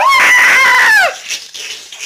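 A rooster crowing: one loud call of about a second that rises, holds and falls away at the end.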